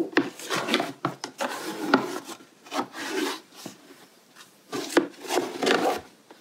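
Plastic dough tub and scraper being handled on a work board: a string of irregular scrapes, rubs and light knocks, some louder strokes near the start, around two seconds in and about five seconds in.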